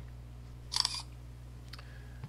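A short computer camera-shutter sound, played when a screenshot is taken with the Print Screen key, about three-quarters of a second in, over a low steady hum.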